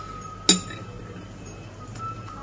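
A single sharp clink of a metal spoon striking a dish, ringing briefly, about half a second in.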